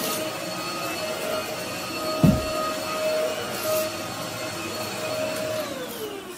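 Corded stick vacuum cleaner running over carpet with a steady motor whine. A single low thump comes about two seconds in, and near the end the motor winds down, its pitch falling.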